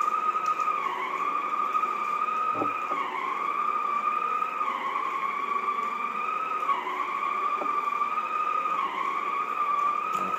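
Shark Sonic Duo hard-floor cleaner running with a polishing pad on a wood floor: a steady high-pitched whine that sags briefly in pitch every two seconds or so.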